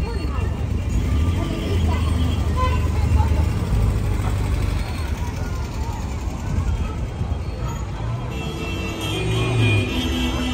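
Classic car engine running at low speed as the car drives slowly past, a steady low rumble that is strongest in the first half, over crowd chatter. Music comes in near the end.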